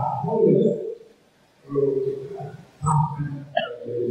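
Speech only: a man's voice over a microphone, in short phrases with a brief pause about a second in.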